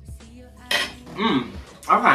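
A metal fork clinking and scraping on a plate, with a couple of short vocal sounds about a second in and near the end, over background music.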